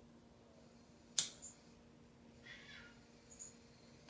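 A pocket lighter struck once with a single sharp click about a second in, then a faint, brief, high-pitched sound a little past the middle, over quiet room tone.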